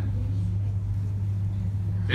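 A steady low hum, one unchanging low tone that runs on under the pause in speech.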